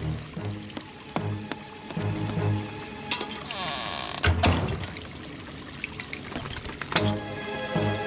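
Cartoon background music with comic sound effects: water pouring as a leaking basement pipe is bailed with a bucket, and a low thunk about four seconds in.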